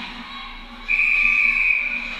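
A referee's whistle blown once in a long steady blast, starting suddenly about a second in, over the noise of the ice rink. It signals a stoppage in play as the goalie covers the puck.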